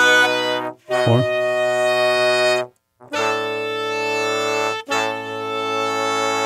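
A horn section heard on its own, playing long sustained chords in phrases of about two seconds separated by short breaks, with a brief sliding note about a second in.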